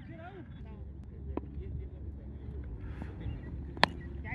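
Cricket bat striking the ball once, a single sharp crack near the end, over faint distant voices and a low wind rumble.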